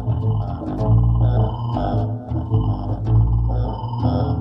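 Live electronic music: a five-string electric bass plays low held notes together with a Buchla modular synthesizer put through granular processing, which adds short, repeated high blips above the bass.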